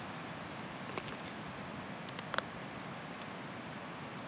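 Backpack straps and plastic buckles being handled and fastened, with a few faint clicks about a second in and again past the two-second mark, over steady background hiss.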